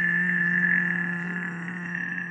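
A man's voice holding one long, steady, drawn-out note at a low pitch.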